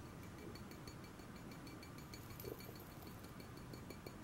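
Quiet room tone with faint handling noise, and one soft touch about two and a half seconds in.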